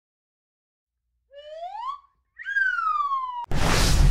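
Intro whistle sound effect in two glides, rising then falling like a wolf whistle. Near the end a sudden rush of noise cuts in, with the low rumble of a car interior under it.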